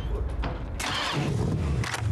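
A car engine running low and steady, heard in the film's soundtrack.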